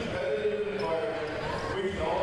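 Public-address announcer's voice echoing through a gymnasium, with a basketball bouncing on the hardwood floor underneath.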